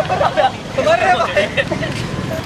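Several young men shouting and laughing as they horse around, over a low steady background rumble; the voices die down near the end.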